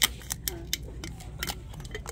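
A loose metal spoon clinking and rattling inside a brown glazed ceramic canister as it is handled and opened, in a string of sharp irregular clicks. It sounds like coins.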